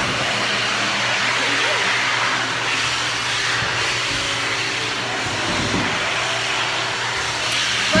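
Electric hand dryer running steadily: an even blowing whoosh with a low motor hum beneath.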